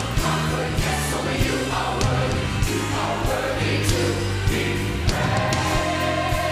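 Church choir singing a gospel song with a live band, the drum kit marking a steady beat under the held choral notes and bass.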